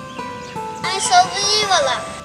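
A child's voice singing one long, wavering phrase over steady held instrumental notes, starting about half a second in and fading near the end.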